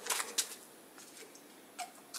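A few scattered sharp clicks and taps close to the microphone, the two loudest in the first half second and fainter ones later, over a low room hiss.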